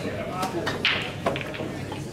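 Indistinct background chatter, with several sharp clicks of pool balls striking each other on nearby tables.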